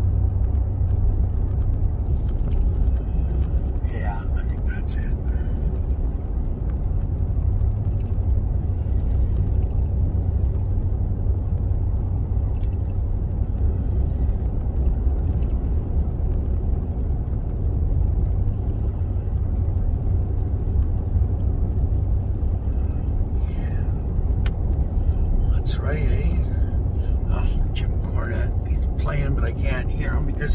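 Steady low rumble of a pickup truck driving, heard from inside the cab: engine and road noise.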